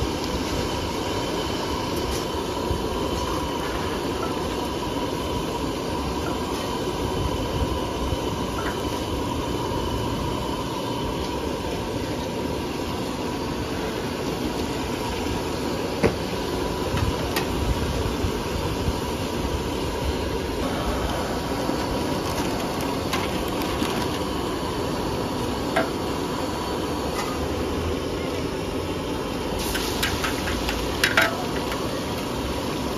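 Gas wok burner running with a steady rush under a large wok, broken by a few sharp clicks of a metal spatula against the wok.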